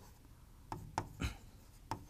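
Pen strokes on a writing board: a few short, faint taps and scrapes as letters are written.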